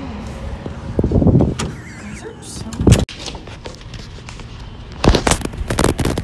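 Young women's voices, words indistinct, coming in short bursts.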